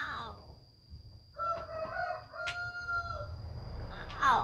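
A rooster crows once, starting about a second in and lasting about two seconds, with the last note falling away. A woman's short falling vocal sounds, like sighs, come just before and just after it.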